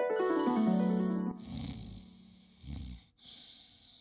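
A short descending musical flourish, falling in steps over about a second, then an old man snoring in his sleep: two snores, then a fainter one near the end.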